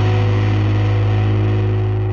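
The last chord of a punk-rock song ringing out: distorted electric guitars and bass hold one sustained chord after the final drum hit, beginning to die away near the end.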